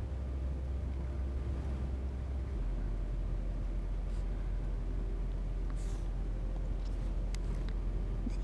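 A steady low hum, with a few faint, brief scratches of a broad-nib calligraphy pen on paper about four and six seconds in.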